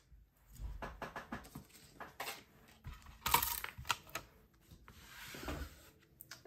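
Thin metal cutting dies and clear plastic die-cutting plates being handled and put away: scattered light clicks and clinks with rustling. There is a louder scrape about three seconds in and a soft sliding hiss near the end.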